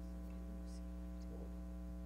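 Steady electrical mains hum, a low buzz with a ladder of higher overtones, carried on the audio feed.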